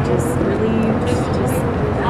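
Steady street traffic noise with indistinct voices mixed in.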